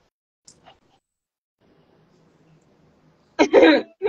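A person's short, loud vocal burst near the end, broken once in the middle. Before it there are two faint clicks and a faint low murmur.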